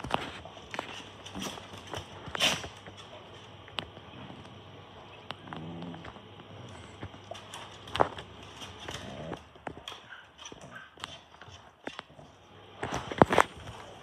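Two small terriers playing on a wooden deck: their claws tap and scratch irregularly on the boards, with a few short low grunts as they mouth each other. A quick cluster of louder taps comes near the end.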